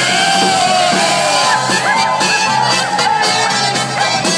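Live polka band with button-style piano accordion, saxophone, electric guitar and drums playing loudly, with audience members whooping and yelling over the music.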